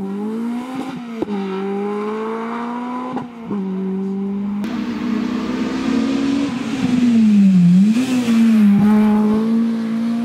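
Honda Civic Type R rally car's four-cylinder engine at full throttle, pulling away. The pitch climbs through each gear and drops sharply at several quick upshifts, with a few sharp cracks at the changes. Later the revs dip briefly, then climb again and the sound gets louder.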